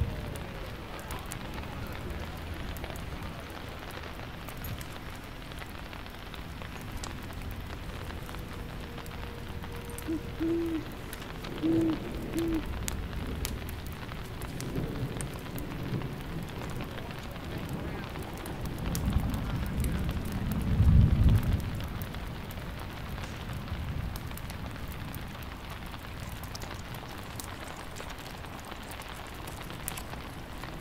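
Steady rain with a low rumble of thunder that builds about two-thirds of the way through and peaks shortly after. A few short pitched sounds come around a third of the way in.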